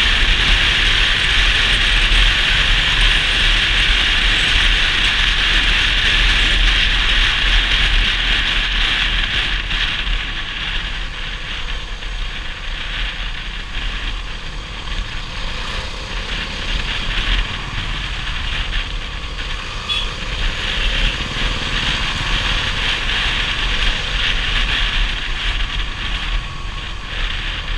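Steady rush of wind and road noise with a low engine rumble from a moving motorcycle, picked up by a rider-mounted action camera; it eases slightly after about ten seconds.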